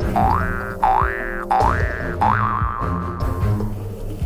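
Comic sound effect over background music: four quick rising pitch glides, the last one wobbling and fading out about three seconds in, above a steady low beat.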